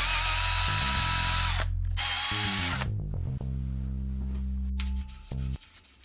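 DeWalt cordless drill boring into a metal plate: the motor whines under load for about a second and a half, stops, then runs again for under a second. Background music with a bass line plays underneath and carries on alone after the drill stops.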